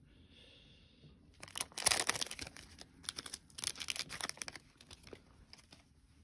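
A foil trading-card pack wrapper being torn open and crinkled: a run of quick rips and rustles starting about a second and a half in, loudest about two seconds in, dying down after about four and a half seconds.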